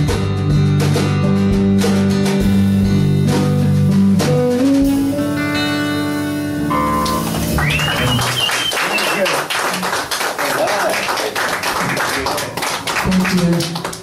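A live band of acoustic guitar, bass guitar and drums plays the final bars of a song, which ends about halfway through. The audience then claps and cheers until the end.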